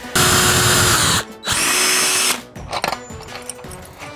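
Cordless drill running in two bursts, about a second and just under a second, each winding down as the trigger is released, as a four-inch bolt is sunk into a foam yoga block. Then a few light clicks of handling.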